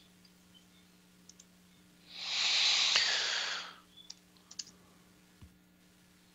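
A few faint computer-keyboard clicks as a new ticker symbol is entered, with one loud rushing hiss about two seconds in that lasts under two seconds. A faint steady hum runs underneath.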